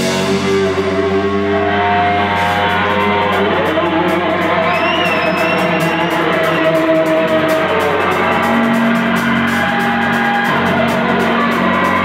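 Live rock band playing loud: long held electric guitar notes over bass and drums. From about two seconds in, a cymbal ticks in a fast even beat, and a brief high gliding tone sounds about five seconds in.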